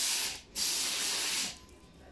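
Plastic film wrapped over a speaker cabinet rustling as fingers rub across it, in two passes, the second longer, then stopping about a second and a half in.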